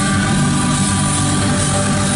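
Live rock band holding a loud, sustained chord: electric guitars and bass ringing steadily under a dense wash of drum and cymbal noise.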